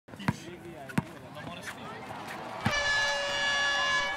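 A basketball bounces twice on a court, with voices faint behind it. From about two and a half seconds in, a loud, steady buzzer tone sounds.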